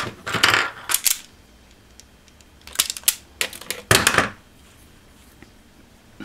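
Automatic wire strippers gripping and stripping the insulation off a wire end, with several sharp metallic clicks and clatter over the first four seconds.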